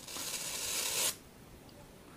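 A graphite pellet flaring up in a reaction, giving a short hiss that builds for about a second and then cuts off suddenly.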